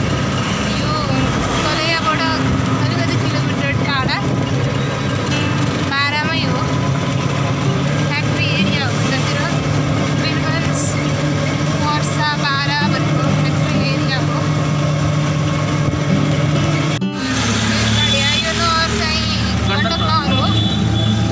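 A song with a wavering singing voice over the steady hum of a vehicle's engine. The sound changes abruptly about seventeen seconds in, and the hum is different after the break.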